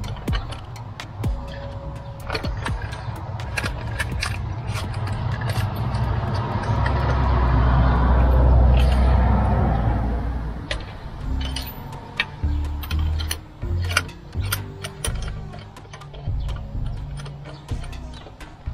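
Background music over irregular clicking from a ratchet and extension turning the spark plugs. The music swells and gets louder in the middle.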